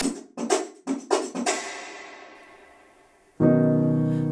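A few short sharp hits from the end of a radio station's intro jingle fade away to near silence. About three and a half seconds in, a grand piano comes in with a loud, sustained chord that rings on.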